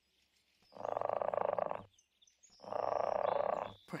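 Cartoon leopard snoring in its sleep: two long rattling snores of about a second each, with a short pause between them.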